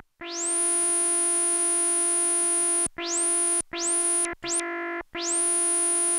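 Stylophone Gen X-1 synth played with its stylus: a resonant, vocal-like lead tone on one repeated note, held for about three seconds, then four shorter notes. Most of the notes open with a quick rising 'tweet', the envelope still sweeping the filter cutoff at the start of the sound.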